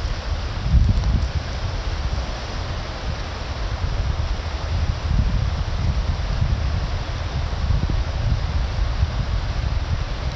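The fast-flowing Niagara River rushing past in a steady hiss of moving water, with wind gusting on the microphone in uneven low rumbles.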